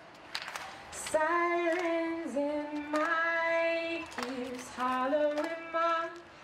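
A woman singing a slow, unaccompanied melody, starting about a second in and holding long notes that slide between pitches.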